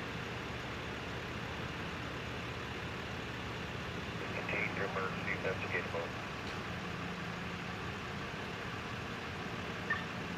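Ambulance engines idling steadily with a low hum. A voice speaks briefly about halfway through.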